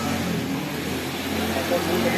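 A motor vehicle engine runs with a steady low hum, with people's voices talking over it.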